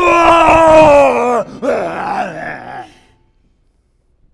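A loud, drawn-out groaning howl from a human voice playing an unseen creature, sliding slightly down in pitch and breaking off about a second and a half in, then a shorter second groan. It is passed off as a dog's howl.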